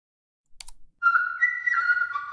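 Synthesized flute-like tone from the Tone Transfer machine-learning instrument, held in steady whistle-like notes that step up once and back down. Two faint clicks come just before it.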